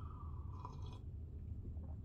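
A man taking a faint sip of coffee from a mug, over a low steady hum.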